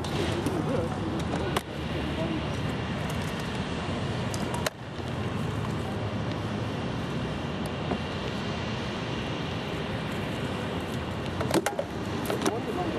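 Sharp knocks of SCA fighters' swords striking round shields and armour: single knocks about a second and a half in and near five seconds, then a quick flurry of blows near the end. Beneath them runs a steady background rumble and hiss.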